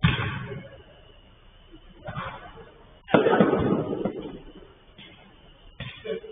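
Four sudden thuds that ring on in a covered five-a-side pitch, the loudest about three seconds in: a football being kicked and hitting the pitch boards and netting.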